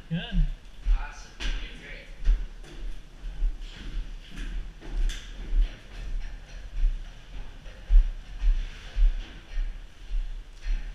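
Footsteps climbing steel grated stairs at a steady pace, a low thud about twice a second.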